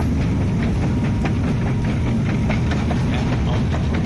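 Metro escalator running as it carries the rider up to the top landing: a steady low rumble with scattered clicks and ticks over it.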